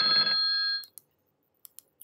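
Trading software's alert chime: a sudden electronic tone of several steady pitches at once, lasting under a second. Two faint clicks follow.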